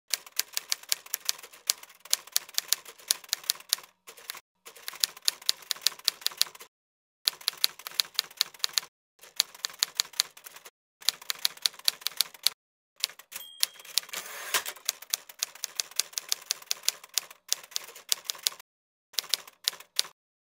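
Typewriter keys clacking, about four or five strikes a second, in runs broken by short pauses. A short high ring comes about two-thirds of the way through.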